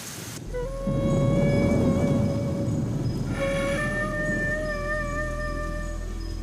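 Heavy rain that cuts off about half a second in, followed by background music: a flute holding long, slow notes that step up in pitch a few times, over a low rumbling swell in the first few seconds.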